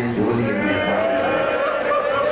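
A man's voice in a mournful wail through a microphone: a few short broken cries, then one long held note from about half a second in.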